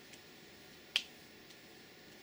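A single sharp click about a second in, over faint steady room hiss.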